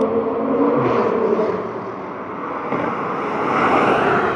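2020 Toyota Supra's turbocharged 3.0-litre inline-six running hard through a catless valvetronic aftermarket exhaust as the car drives toward and past. A steady engine note early on gives way to a rush of noise that grows loudest near the end as the car goes by.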